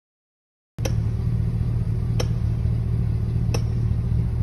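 A steady low machine hum that starts abruptly about a second in, with a faint click roughly every second and a half.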